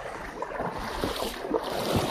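Footsteps wading through shallow river water, with irregular splashes, and wind buffeting the microphone.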